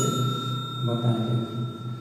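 Notification-bell 'ding' sound effect from a subscribe-button animation: a bright chime struck just before, ringing on and fading away over about two seconds.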